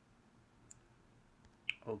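Quiet background hiss with two short clicks: a faint one well before the middle and a sharper, louder one near the end, just before a man's voice says "okay".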